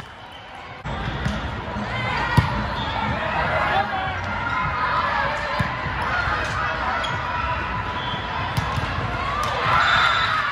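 Volleyball rally in a large gym hall: a sharp ball strike about two and a half seconds in and another around the middle, over players and spectators shouting and calling throughout. The first second is quieter before the voices pick up.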